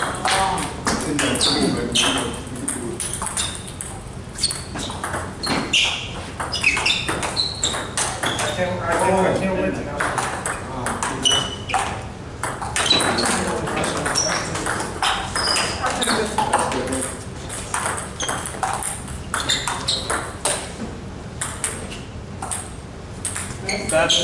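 Table tennis rally: a NEXY plastic table tennis ball clicking off paddles and bouncing on the table, many sharp ticks in quick, irregular succession with a short high ring.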